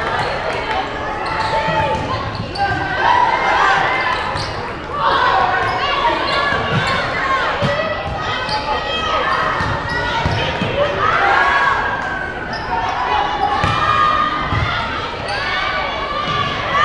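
Indoor volleyball play in a gymnasium: the ball being struck and bouncing, with players calling out and spectators talking throughout, all echoing in the large hall.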